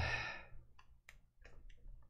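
A man's sigh, a breathy out-breath that fades away within about half a second, followed by a few faint clicks.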